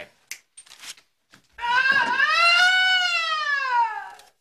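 A long, high-pitched wailing cry that rises and then falls in pitch, lasting about two and a half seconds, starting about a second and a half in after a near-silent pause.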